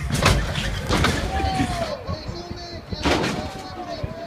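Lowrider car hopping on its hydraulics, with a few loud bangs as it slams down, near the start, about a second in and about three seconds in. People's voices call out in long drawn-out shouts between the bangs.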